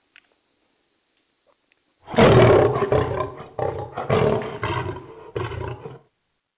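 Near silence, then about two seconds in a loud, rough roar lasting about four seconds and breaking off in a few pieces.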